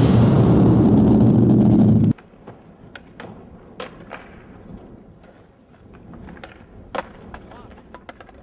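Skateboard wheels rolling loud and close on asphalt for about two seconds, then cut off abruptly. Quieter after that, with a few sharp clacks of a skateboard on pavement and a ledge, the loudest about a second before the end.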